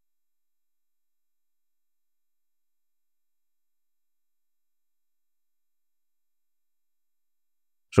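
Silence: the sound track is dead quiet, with a voice starting only at the very end.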